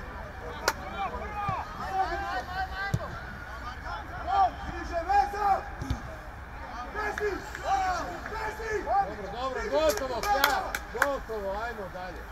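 Footballers shouting short calls to each other across the pitch during open play, with a few sharp knocks from the ball being kicked. A cluster of the knocks comes near the end.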